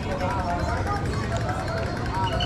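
Chatter of people talking on a busy street market, over steady low street noise.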